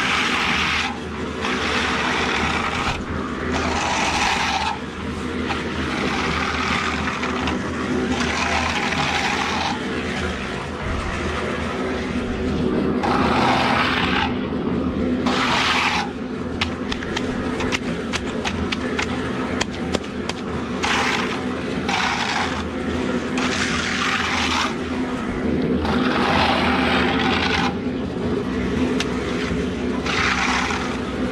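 Hand float scraping over wet concrete as a fresh slab is floated, in repeated sweeping strokes of about a second or two each. A steady low mechanical hum runs underneath.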